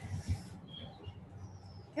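Faint bird chirps: a couple of short high notes about half a second to a second in, then a brief thin whistle, over a low background hum.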